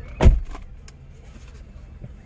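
A single loud, heavy thump about a quarter second in, followed by a low steady background hum.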